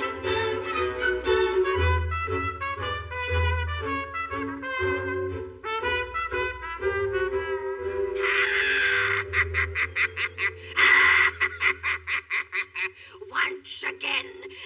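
Orchestral cartoon title music with brass. About eight seconds in it gives way to two loud hissing swells, the second about eleven seconds in, and then a run of quick short staccato notes.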